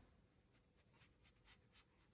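Near silence, with faint scuffing strokes of a round foam ink-blending tool rubbed over a card tag, about four a second in the second half.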